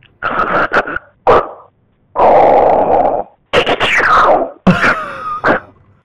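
A woman imitating her husband's snoring over a phone line: about five snore sounds, the longest a second-long one a little after two seconds in, which the listener likens to Darth Vader. There is a laugh about a second in.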